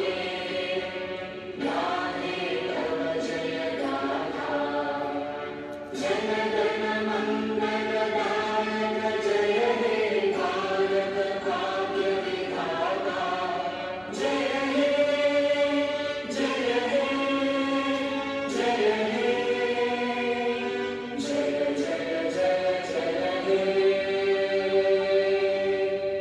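A choir singing a slow song in unison, in sung phrases a few seconds long.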